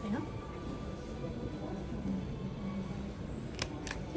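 Ear-piercing instrument firing a stud through an earlobe: two sharp clicks in quick succession near the end, over faint background voices.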